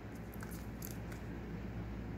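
Quiet room with a steady low hum and a few faint clicks of a small plastic wax melt cup being handled, about half a second to a second in.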